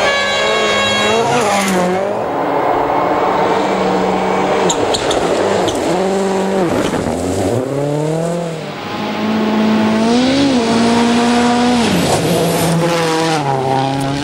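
Several World Rally Cars passing at full throttle on gravel, their turbocharged engines revving hard, with the pitch climbing and dropping sharply again and again as they shift and lift.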